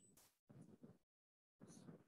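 Near silence: faint room tone that drops out to dead silence for about half a second in the middle.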